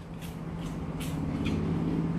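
A dog crunching a potato crisp, in a few sharp crackling clicks, over a low steady hum that grows louder.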